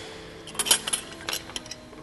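Light clinks and knocks of glass and kitchenware being handled on a countertop: a small cluster of sharp clinks about half a second in, then a few more around a second and a half.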